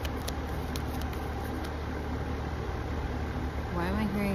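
Tarot deck being shuffled by hand, with a few light card clicks in the first second and a half, over a steady low rumble. A voice starts just before the end.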